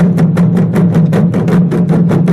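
A drumroll, fast even drum strokes about seven or eight a second over a steady low hum, played as a short music cue.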